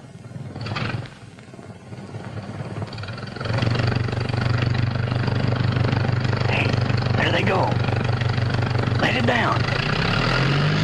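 Propeller aircraft engine droning, swelling in about three seconds in and then holding steady and loud.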